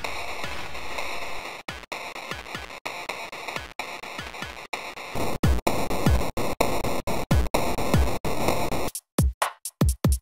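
Drum-machine loop from KORG Gadget's Recife drum gadget, processed as a bit-crushed, band-passed, reverb-washed background 'drum shadow', heard as the insert effects are switched off one by one. About five seconds in, with the band-pass filter off, the kicks come through deep and louder; near the end, with the decimator off, the hiss and wash stop and the hits turn short and dry with silence between them.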